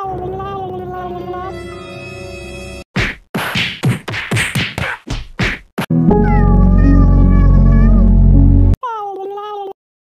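A string of edited sound effects and music: a pitched cry that falls and wavers over a held chord, a run of sharp hits, a very loud bass-heavy blast, and a second short falling cry, after which the sound cuts out.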